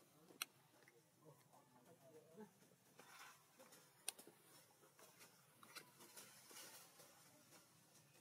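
Near silence: faint background with a few soft rustles and two short, sharp clicks, one about half a second in and one about four seconds in.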